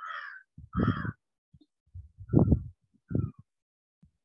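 A crow cawing, four harsh calls spaced about a second apart.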